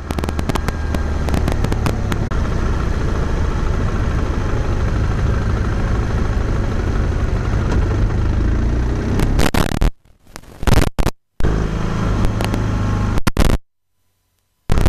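Wind and road noise on a bicycle-mounted action camera's microphone, with frequent sharp knocks from the mount shaking over the road. About ten seconds in, the sound cuts in and out with loud clicks, then stops shortly before the end.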